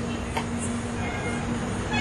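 A pause in speech filled by a steady hiss with a low, steady hum.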